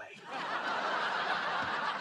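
Studio audience laughing at a punchline, swelling up within the first half second and holding at a steady level.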